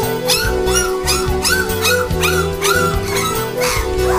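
Young Labrador puppies whimpering and yelping in a quick run of short rising-and-falling cries, about three a second, over background music.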